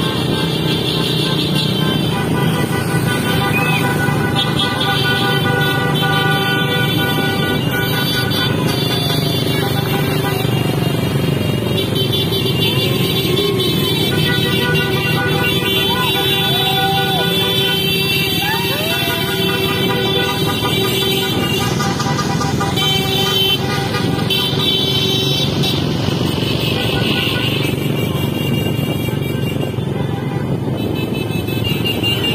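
Traffic noise of a motorcycle caravan: many motorcycle and car engines running along the road, with music playing and vehicle horns sounding in long held blasts.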